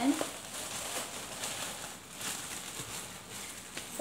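Thin clear plastic bag crinkling and rustling in irregular crackles as it is pulled open by hand.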